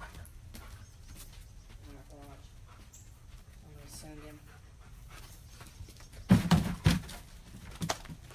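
A dog whines faintly twice, short rising calls a couple of seconds apart. Near the end come a few loud, sharp thumps in quick succession.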